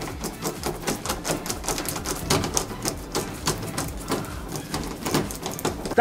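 Screwdriver tightening the screws of a brass doorknob: rapid, irregular clicking that runs on throughout.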